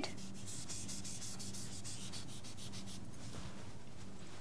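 Faint rapid scratching of writing or shading strokes on a drawing surface, about eight strokes a second for some three seconds, then stopping, over a low steady electrical hum.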